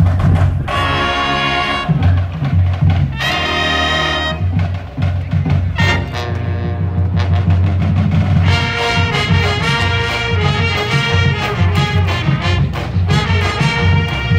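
High school marching band playing, brass with sousaphones: a few short, loud chord blasts in the first seconds, then a continuous melody over a steady low pulse from about two-thirds of the way in.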